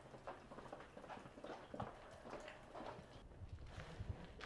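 Faint, irregular light taps and knocks, several a second, with no voices.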